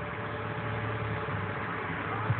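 Steady low hum of a Chevrolet's engine running, heard from inside the car's cabin.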